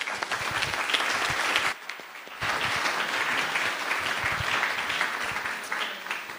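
Audience applauding after a talk, with a short break about two seconds in before the clapping picks up again and tails off near the end.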